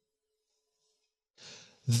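Near silence, then a man's short, audible in-breath about one and a half seconds in, just before he starts speaking at the very end.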